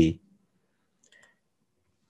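A spoken word trails off at the very start, then near silence with one faint click about a second in.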